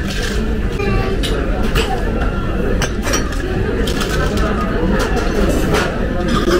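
Busy restaurant dining room: a murmur of voices over a steady low room hum, with a few sharp clinks of cutlery on plates.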